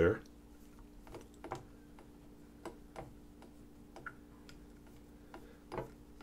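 Faint, irregular small clicks and ticks from fingers turning the piston knob of a piston-filler fountain pen, cycling the piston to push out air bubbles and get a full ink fill. A faint steady hum runs underneath.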